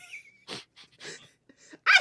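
Soft laughter: a brief high-pitched squeal, then a few short breathy laughing exhales.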